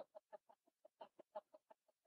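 Near silence, with a faint rapid series of short pulses in the background, about seven a second.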